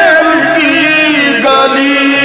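Background vocal music: a solo voice chanting in long, wavering held notes.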